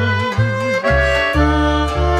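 Romanian lăutărească band music played acoustically on violin, accordion and double bass. A held note wavers in pitch for about the first second, then the double bass takes up a steady run of low notes under sustained accordion chords.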